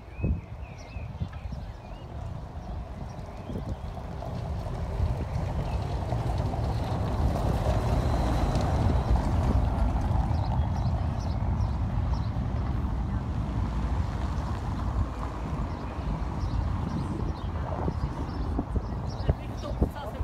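Wind rumbling on the microphone over steady outdoor street and traffic noise, with faint voices in the background.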